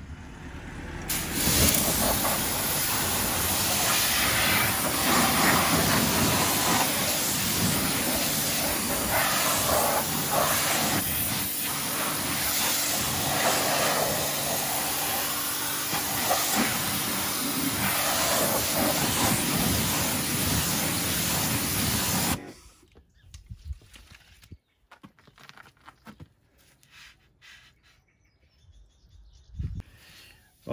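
Pressure washer jet rinsing a car's alloy wheel, tyre and wheel arch: a loud, steady spray hiss that starts about a second in and cuts off suddenly about three-quarters of the way through, leaving only faint handling sounds.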